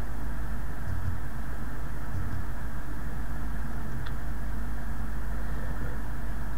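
Steady background hiss over a low hum: the recording's room tone, with no other sound.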